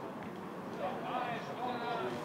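Distant raised voices on a football ground, faint against the steady outdoor field noise, growing a little in the second half.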